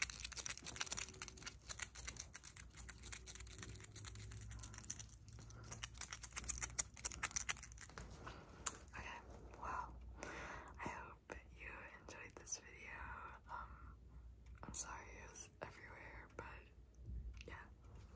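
Dense, rapid clicking and tapping of ring-laden fingers close to the microphone, which gives way about eight seconds in to soft whispering.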